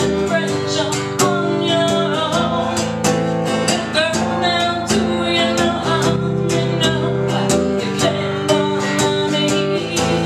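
A woman singing while strumming an acoustic guitar, with steady strokes under the vocal line.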